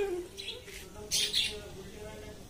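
Faint, short, high-pitched bird chirps, one about half a second in and a pair about a second in.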